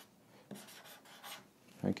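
Marker pen writing on a sheet of paper: a few short, faint scratching strokes.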